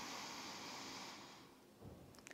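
A woman's long, deep inhale through the nose, a soft steady rush of air that fades out about a second and a half in.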